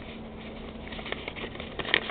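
Quiet room noise with a few faint short clicks in the second half and a sharper click just before the end.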